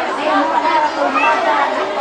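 Indistinct chatter: voices talking over one another in a large hall.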